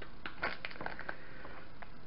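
Light crinkling of a plastic wrapper being handled: a string of small, irregular crackles and clicks.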